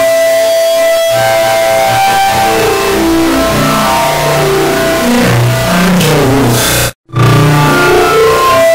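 Tens of thousands of copies of a lecture intro's soundtrack, voice and music together, stacked on top of one another into a loud, dense wash of sustained tones and noise. It drops out completely for a split second about seven seconds in, then returns.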